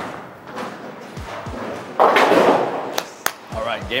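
Bowling ball rolling down the lane, then a loud crash of pins being struck about two seconds in, with a few sharp knocks around it.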